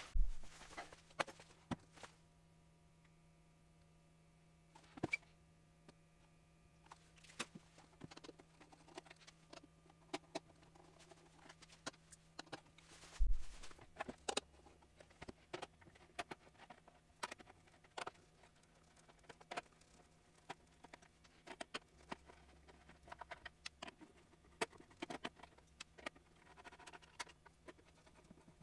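Faint, scattered clicks, taps and rustles of plastic helmet parts and masking tape being handled and worked on at a workbench, with one heavier thump about halfway through.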